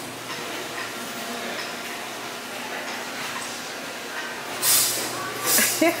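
Steady room background with faint murmur, then two loud short sniffs near the end as the wine in a glass is smelled, followed by a laugh.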